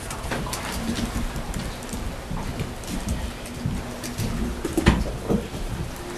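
Rustling and scattered light knocks of people moving about, with a louder knock about five seconds in.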